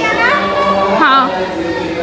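A young child's high-pitched voice calls out twice, once near the start and again about a second in, over steady background music.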